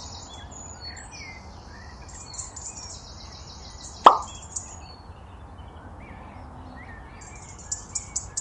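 A plastic toy cheetah set down in the tray of a toy metal trailer: one sharp tap about four seconds in. Birds chirp faintly in the background.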